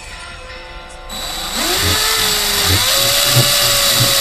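DeWalt cordless drill driving a screw through a 90-degree right-angle extension into a compass mounting bracket. The motor spins up about a second in, rising in pitch, eases off briefly, then climbs again and runs steadily at a higher pitch.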